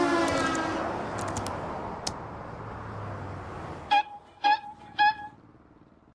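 Road traffic noise fading away as the last tones of the music die out. It ends with three short, high horn toots about half a second apart.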